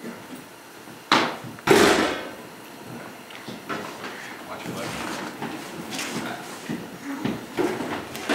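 A MIG welding gun and its cable being handled and set down: two knocks about half a second apart, the second heavier and longer. Low voices murmur through the rest.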